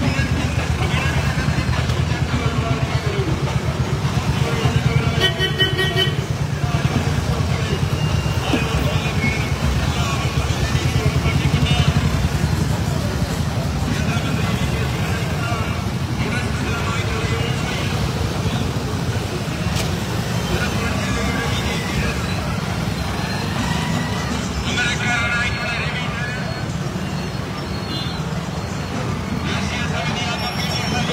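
Many motorcycle and scooter engines running in a slow-moving column, a steady low drone, with people's voices and calls over it at times.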